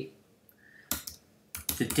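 Computer keyboard keystrokes: a few quick taps about a second in.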